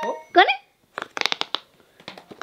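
A child's short, high-pitched vocal sound, then a quick run of about half a dozen sharp little clicks and pops from a silicone push-pop fidget toy being pressed.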